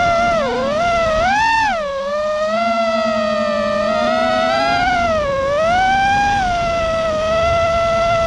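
FPV racing quadcopter's brushless motors and propellers whining, the pitch swooping up and down with the throttle: it rises about a second and a half in, holds fairly steady, then dips and climbs again past the middle.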